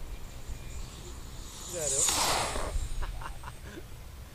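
A whoosh of air that swells and fades about two seconds in, with a high whistle falling in pitch: an ABm F4 'Orca' 2.9 m RC glider's airframe cutting through the air at speed as it passes.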